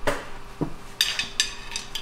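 Steel hand tools and sockets clinking against each other in a toolbox drawer as it is rummaged through: a couple of soft knocks, then several sharp, ringing metallic clinks in the second half, over a faint steady hum.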